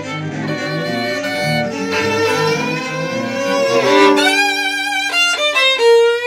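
Violin playing sustained bowed notes over a lower accompaniment, changing to a quicker run of short notes near the end.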